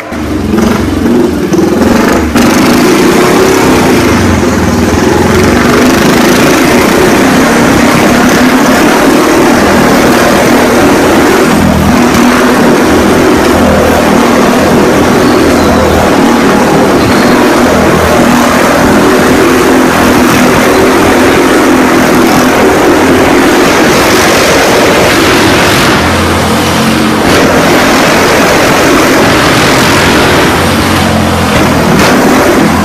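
Motorcycle engine running hard and revving continuously as it circles the wall of death, very loud and unbroken; it cuts in suddenly at the start.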